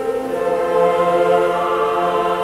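Mixed choir singing sustained chords with instrumental ensemble accompaniment, a lower part joining about half a second in.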